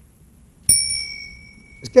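A small metal bell struck once about two-thirds of a second in, a bright single ring that fades away over about a second.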